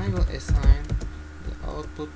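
Typing on a computer keyboard, short key clicks as a word is typed. A person's voice is heard briefly in the first second.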